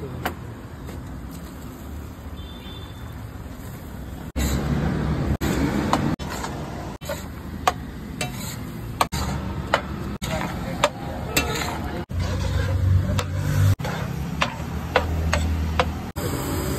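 Metal spatula clinking and scraping against a large flat tawa griddle as chopped tomatoes are stirred into sizzling masala. The clinks come every half second or so from about a third of the way in.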